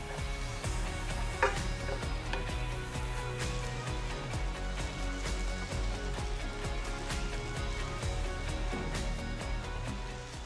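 Sliced shiitake mushrooms and green onion sizzling in oil in a frying pan while a wooden spatula stirs them, under steady background music.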